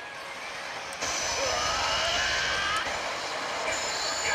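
Pachislot machine sound effects during a bonus-reveal animation: a sustained rushing, hissing effect starts about a second in, with faint rising tones over it and a high steady tone near the end, as the machine signals that a bonus has been won.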